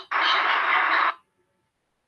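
Loud steady hiss-like noise over a video-call line for about a second, cutting off suddenly into gated silence.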